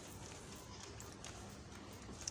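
Quiet background: a faint steady low hum under a light hiss, with no distinct event.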